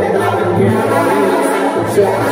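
Live banda sinaloense music played loud and steady: voices singing together over tuba and brass.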